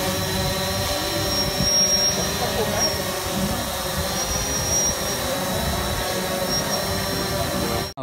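Quadcopter drone hovering close by, its propellers giving a steady whine with high held tones.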